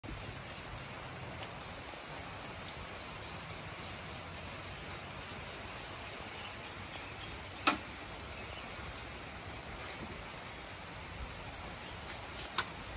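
Steady faint hiss with scattered light ticks, and one short, sharp knock about two-thirds of the way through.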